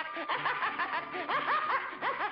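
A cartoon rabbit's voice laughing mockingly in a quick run of short rising-and-falling ha's, about four or five a second, over faint orchestral underscore.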